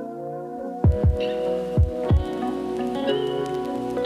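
Background music: sustained held chords, with deep drum beats coming in just under a second in.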